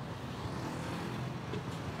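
Steady low rumble of motor-vehicle and traffic noise, with no distinct events.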